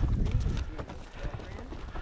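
Hooves of a mule walking on a rocky trail, with the horse ahead: uneven clops and knocks on stone and gravel.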